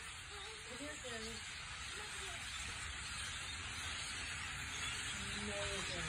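Faint outdoor ambience: a steady hiss, with a few faint short low calls or murmurs in the first two or three seconds and again near the end.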